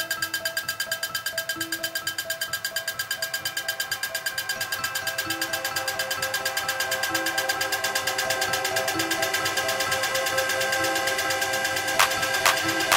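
Hard dark techno in a breakdown: a rapidly pulsing bright synth over held chord tones and a short repeated low synth note, with no kick drum, slowly building in loudness.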